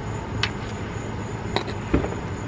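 A few sharp metallic clicks as a socket and ratchet are handled and fitted together for the oil drain plug, over a steady low hum.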